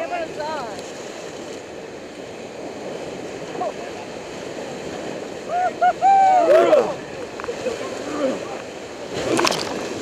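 Whitewater rapids rushing steadily around an inflatable raft, with a wave splashing over the bow near the end.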